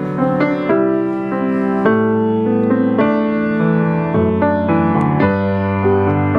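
A Yamaha C3 6'1" grand piano being played: a slow, sustained passage of chords and melody with a full bass, the notes ringing on.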